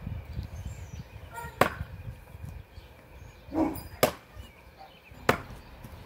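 Steel throwing stars striking and sticking into the end grain of a log-round target: three sharp thwacks, one to two and a half seconds apart. A softer, duller knock comes just before the second strike.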